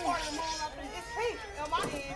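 Several children's voices chattering and calling out at once, overlapping, with no clear words.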